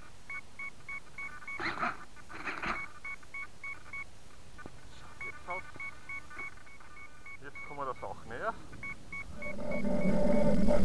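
Runs of short electronic beeps, about three a second, from the radio-control electronics of a large model flying wing, broken by a few short voice sounds. Near the end its electric motor starts to spin up and grows louder.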